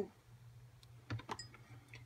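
Quiet room with a few faint, light clicks around the middle.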